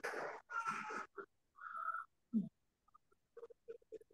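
A run of short animal calls, four or five of them in the first two and a half seconds, followed by fainter short ticks.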